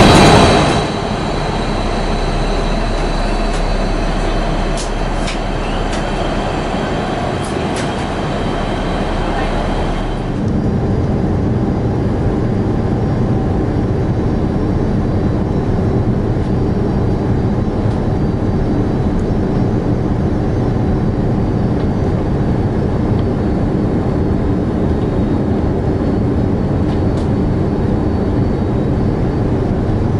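Airbus A330-300 cabin noise on descent into landing: a steady rush of airflow and engine noise with a low rumble. About ten seconds in it changes abruptly to a fuller, slightly louder rumble that holds steady.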